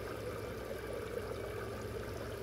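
Water running steadily into a koi pond, a continuous trickling splash with a low steady hum underneath.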